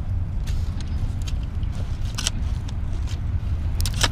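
A steady low rumble, like a vehicle engine running nearby, with a few light scrapes and knocks of a digging bar working the soil of a pit wall.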